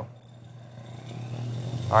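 Van de Graaff generator switched on, its motor and belt spinning up: a hum with a faint rising whine that grows steadily louder.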